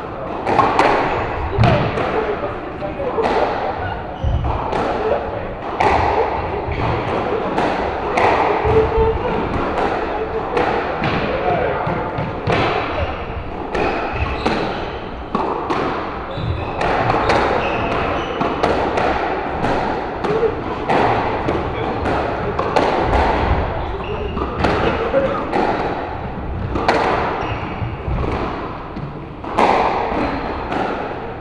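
Squash rally: the ball struck by rackets and slapping off the court walls, sharp impacts coming about once a second, with indistinct voices in the background.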